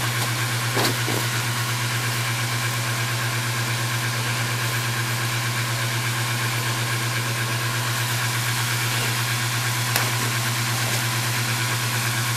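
Steady low mechanical hum, unchanging throughout, with a couple of faint clicks about a second in and near the end.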